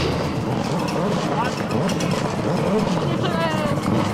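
Ford Focus WRC rally car's turbocharged four-cylinder engine running hard as the car slides through a gravel corner, with a voice over it.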